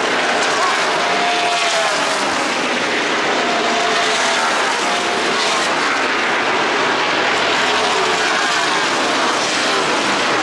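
A pack of NASCAR Cup Series stock cars racing past with their V8 engines at full throttle, a continuous loud drone with engine notes repeatedly rising and falling as cars come by and go away.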